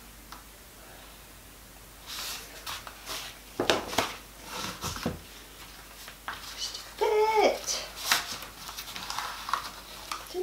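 Scattered clicks, taps and scrapes of a spoon and gloved hands working thick soap batter into a lined wooden loaf mould and pressing down the liner. A short vocal sound, rising then falling in pitch, comes about seven seconds in.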